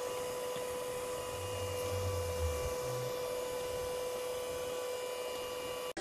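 Fokoos Odin-5 F3 3D printer idling with a quiet, steady high whine, and a brief low drone of its motors about two seconds in as the print head and bed move to the next levelling point.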